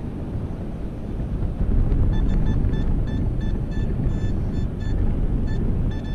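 Nokta Makro Simplex metal detector sounding its target tone over a buried coin: a quick run of short high beeps, about five a second, starting about two seconds in, which the hunter reads as a copper penny or a dime. Under it, a steady low rumble of wind on the microphone.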